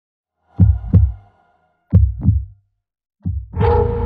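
Heartbeat sound effect: two heavy double thumps, lub-dub, then a third whose second beat opens into a long, ringing boom near the end.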